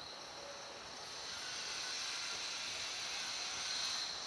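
Pen writing on paper: a soft, steady scratching hiss that grows a little louder over the first second or two and then holds.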